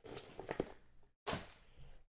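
Faint handling noise of trading cards and a plastic card holder being moved on a table mat, with a few light clicks about half a second in.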